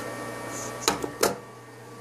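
Two sharp clicks about a third of a second apart over a faint steady background hum.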